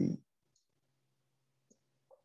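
A man's voice trails off at the start. Then there is only a faint steady low hum and a single faint click near the end, the sound of a computer mouse click.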